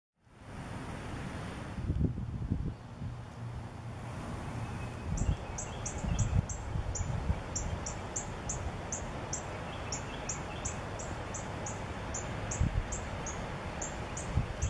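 Outdoor ambience with a steady noise haze and occasional low rumbles. From about five seconds in, a high, short, falling chirp repeats about three times a second, typical of a small bird or insect calling.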